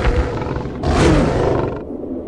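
A deep, rough monster roar about a second long, starting a little before halfway, over a steady background music bed.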